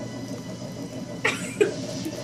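A short cough-like vocal burst about a second in, followed by a brief sharp one, against quiet room noise.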